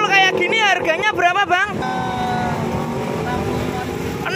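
Brief talking, then a motor vehicle engine running steadily in passing traffic.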